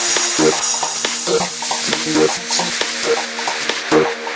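Electronic dance track in a breakdown: the kick drum drops out and a hissing white-noise wash fills the top. Beneath it run a steady bass tone and short synth notes about once a second.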